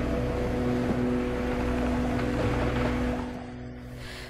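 Soft background music holding steady low tones over a rushing sea ambience of wind and waves. The rushing fades about three seconds in.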